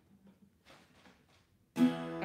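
An acoustic guitar chord strummed once near the end, ringing on, after a near-quiet pause. The chord is a movable open E-shape voicing high on the neck.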